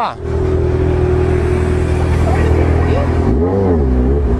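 Motorcycle engine idling steadily close by, with a brief voice near the end.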